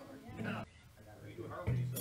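A band playing softly: a couple of low bass guitar notes and plucked guitar notes, with voices talking in the room.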